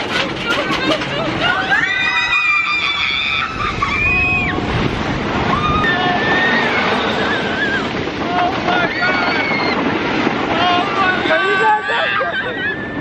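Riders screaming on a wooden roller coaster, several voices overlapping in long high held and gliding cries, over a steady rush of wind on the microphone and the rumble of the moving train.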